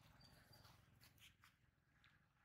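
Near silence: faint background with a few soft scattered clicks and rustles.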